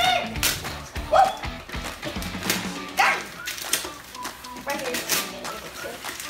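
Gift wrapping paper being torn and crumpled by hand as a small present is unwrapped, in several short crackling rips.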